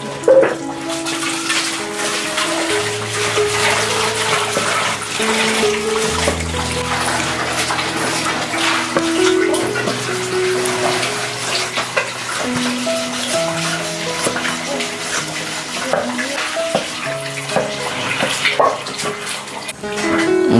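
Background music with slow, held notes over repeated knocks of a steel cleaver finely chopping duck offal on a wooden cutting board.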